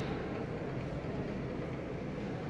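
Steady low rumbling background noise with a faint hum, with no distinct clicks or knocks.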